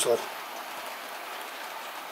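Steady, even hiss of a model train running along the layout's track, with the last word of a man's speech at the very start.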